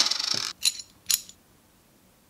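Small metal nut from a Hanayama Cast Nutcase puzzle set down on the table: a metallic clink that rings for about half a second, followed by three lighter clinks within the next second.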